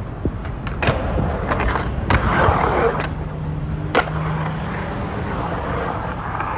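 Skateboard wheels rolling and carving on a concrete bowl, with several sharp clacks of the board, the loudest at about one and two seconds in and again at four seconds.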